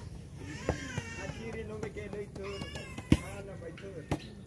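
Plastic volleyball being struck hard by hand: two sharp smacks, a lighter one under a second in and a much louder one about three seconds in. Drawn-out high-pitched calls run between them.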